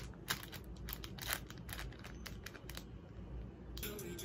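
Plastic packaging crinkling as small packets are handled, in a run of short crackles that dies away about three seconds in; music starts near the end.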